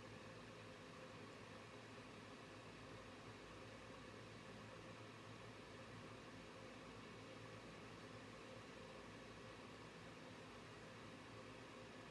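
Near silence: steady faint room hiss with a low hum.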